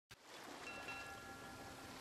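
Faint rushing of flowing water, fading in at the start, with a few soft, steady high tones held briefly over it.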